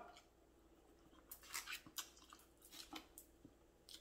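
Near silence with a few faint soft clicks, in a cluster about a second and a half in and again near three seconds: quiet chewing of a mouthful of lo mein noodles.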